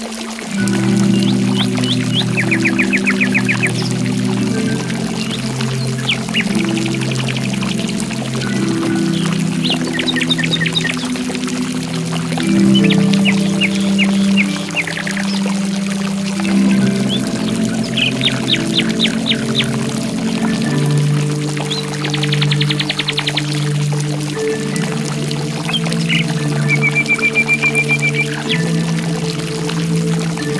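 Slow piano instrumental with sustained low notes, mixed over the steady rush of running water. Songbirds break in every few seconds with short, rapid trills.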